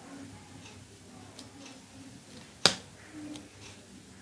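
A single sharp click about two and a half seconds in, among faint small ticks and rustles.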